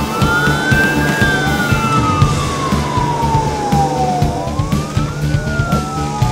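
Sirens of airport crash fire trucks wailing, two overlapping slow rising-and-falling tones, over background music with a steady beat.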